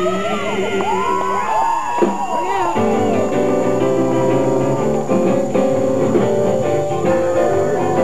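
Live gospel band playing an instrumental passage with an electric guitar lead: notes bent and slid up and down in the first few seconds, then steady held chords over the band.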